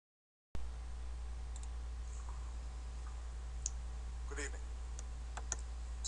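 Room tone before the speech begins: a steady low hum and faint hiss, with a few scattered sharp clicks and a brief voice sound a little past four seconds in.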